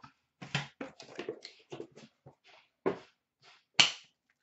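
Hands handling a cardboard card box and trading cards: a run of short taps, clicks and rustles, the two sharpest near the end.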